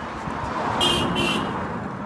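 A vehicle passing, with two short horn toots near the middle.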